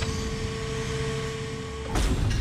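Steady dark drone of film score and sound design: a low rumble under a haze of noise, with one mid-pitched tone held throughout.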